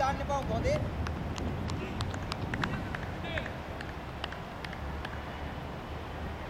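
Players' voices calling briefly across an open cricket ground, loudest near the start, over a steady low rumble, with scattered light clicks.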